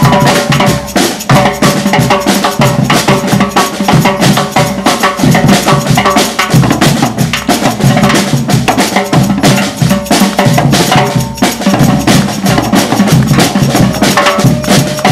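Percussion group playing a fast, dense samba-batucada groove on aluminium-shelled drums struck with sticks and mallets, over a chocalho jingle shaker.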